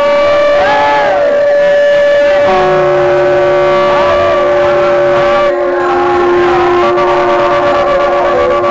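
Devotional chanting by a procession crowd over long held drone tones; a second, lower steady tone joins about two and a half seconds in.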